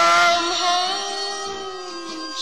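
Background music from a song soundtrack: sustained notes held between sung lines, easing off in level after about a second.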